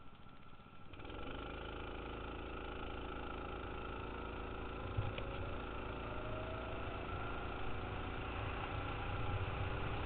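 A small vehicle engine heard from a helmet-mounted camera while riding. It is quieter for the first second, then picks up and runs at steady, slowly climbing revs, with one short click about five seconds in.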